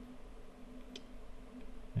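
Quiet room tone with a low steady hum and one faint click about a second in.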